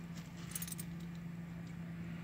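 A faint, steady low hum, with a brief light metallic jingle about half a second in.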